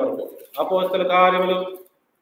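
A man's voice: after a brief pause, one drawn-out vocal sound of about a second, held at a fairly steady pitch, then a short silence.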